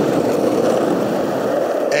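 Skateboard wheels rolling over pavement, a steady rumble.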